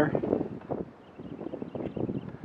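Wind on the microphone outdoors: an irregular low rumble and rustle, quietest about a second in.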